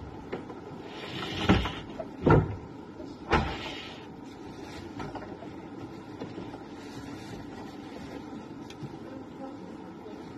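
Close handling noise against a phone's microphone: a rustle and then three sharp knocks about a second apart in the first few seconds, over a steady low hum.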